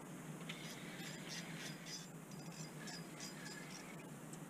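Fishing reel being worked as the rod is lifted and reeled: faint, scratchy bursts of clicking and whirring, two or three a second, starting about half a second in, over a low steady hum.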